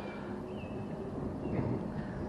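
Outdoor background noise: a steady low rumble of distant road traffic, with a few faint high chirps.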